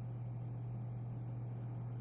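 A steady low hum with a faint hiss under it, unchanging throughout; no speech.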